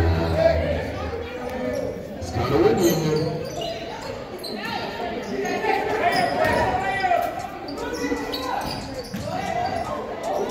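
Basketball bouncing on a hardwood gym floor during a game, with many voices shouting and talking, echoing in the large gym.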